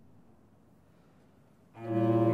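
A faint, fading resonance, then about 1.7 s in, a loud sustained low chord from the baroque continuo (cello and bass) begins. It opens the bass recitative of the cantata.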